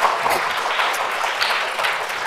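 Congregation applauding, the clapping slowly dying down.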